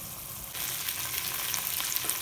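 Meat frying in hot fat in a cast iron pot, a steady sizzle that gets louder about half a second in.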